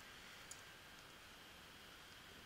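Near silence: faint room hiss with one small computer-input click about half a second in and a fainter tick a moment later.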